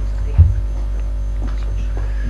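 Steady electrical mains hum on the sound system. A single sharp low thump comes about half a second in, a knock picked up by the desk microphones as a person stands up from the table.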